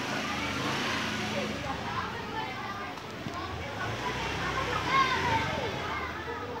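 Voices talking in the background, not clearly made out, over a steady outdoor hum.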